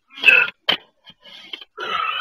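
Very young kittens spitting and hissing in short, sharp bursts, the loudest just after the start with a sharp spit right after it, ending in a brief cry near the end.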